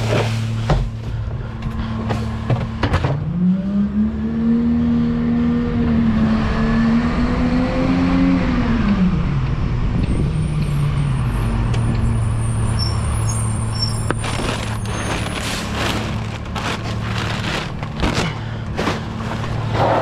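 McNeilus rear-loader garbage truck's diesel engine running steadily, revving up a few seconds in as the truck pulls ahead, holding, then dropping back toward idle about halfway through. A bin knocks against the hopper near the start, and metal clatter and rattling fill the last few seconds.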